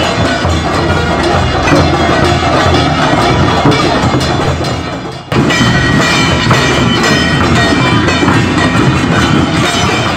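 Dhol and madal drums of a Bhil tribal drum group, beaten with sticks in a loud, continuous rhythm. The sound drops away briefly about five seconds in and comes back abruptly, with a held high melodic line over the drumming afterwards.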